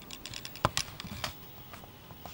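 Handling noise: a quick, irregular run of clicks and knocks, the loudest about two-thirds of a second in, as the camcorder is moved into place and an acoustic guitar is brought up close to it.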